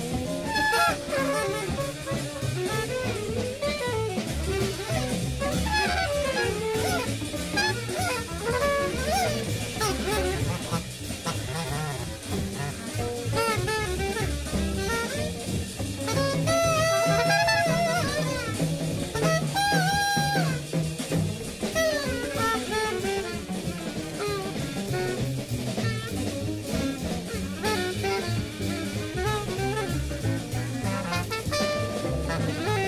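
Free jazz played by two drummers on separate drum kits, one panned to the right and the other to the left, under busy saxophone and brass lines.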